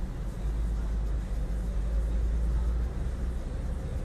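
Steady low rumble of a car heard from inside its cabin, a little louder in the middle.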